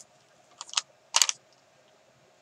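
Clear plastic sticker sheet crackling as a sticker is peeled off it: a few light clicks, then a louder crinkle just over a second in.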